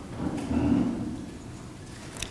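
A low rumble of room noise picked up through the podium microphone, fading gradually.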